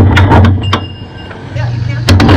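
Knocks and clatter of a crew changing both rear tires on a 410 sprint car, picked up through the car's chassis by the in-car camera, with a brief high whine near the middle. A steady low rumble runs underneath.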